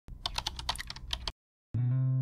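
Rapid keyboard-typing clicks, about ten a second for just over a second, then a brief silence before acoustic guitar music begins near the end.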